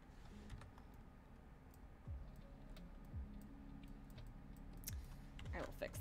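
Faint, scattered clicking of computer keyboard keys pressed now and then, with a few soft low thumps.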